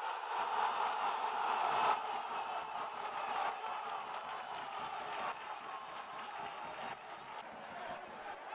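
Stadium crowd cheering as a goal goes in. It swells at once, is loudest about two seconds in, then carries on a little lower.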